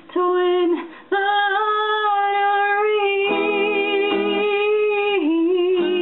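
A woman singing over acoustic guitar: a short phrase, then one long note held with vibrato for about four seconds, with a few guitar notes under it.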